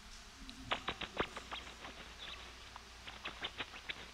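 A tickled rat's ultrasonic vocalizations, made audible, heard as a run of short, sharp little squeaks in quick irregular clusters starting under a second in. These are the calls the rat makes while being tickled, its 'laughter' in play.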